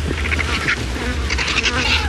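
Vultures giving harsh, raspy hissing squawks in short bursts, louder near the end, over a low steady hum.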